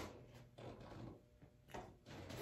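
Near silence: room tone, with faint soft movement noise and one brief knock near the end.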